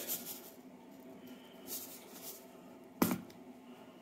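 A plastic tub of dry yeast set down on a countertop: a single sharp knock about three seconds in, after faint handling rustle.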